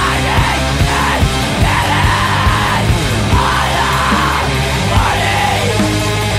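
Loud hardcore punk music: screamed vocals over distorted guitars and drums, the screaming coming in at the start.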